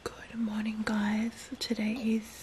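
Speech only: a woman talking in a low, hushed voice.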